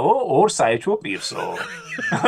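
Men's voices in lively conversation, breaking into laughter.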